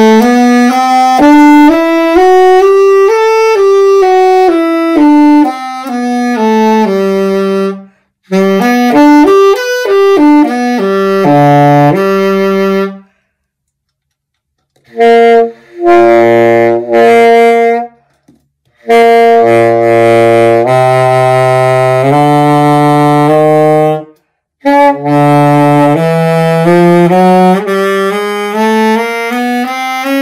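A C-melody saxophone, a Martin Handcraft stencil, played in several melodic phrases with short pauses between them, dipping to its low register in the middle. It is played as bought, dirty and with significant air leaks, on a C-melody mouthpiece with a Legere 2.25 synthetic tenor reed.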